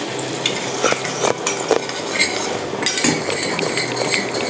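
Coconut milk bubbling as it simmers in a small stainless-steel pan over a low gas flame, with a metal spoon stirring it and clicking against the pan several times.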